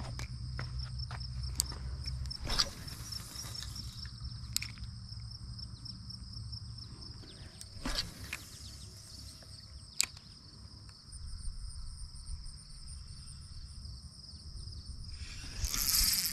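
A steady, high-pitched, pulsing chorus of insects, with a low rumble of wind on the microphone and a few sharp clicks and knocks.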